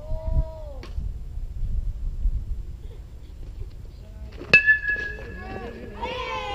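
An aluminium youth baseball bat hitting a pitched ball: one sharp hit followed by a ringing ping that hangs on for about a second and a half.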